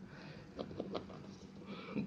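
A pen writing on paper: faint, short scratching strokes.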